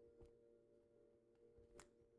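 Near silence: a faint steady hum of room tone, with two faint clicks, one just after the start and one near the end.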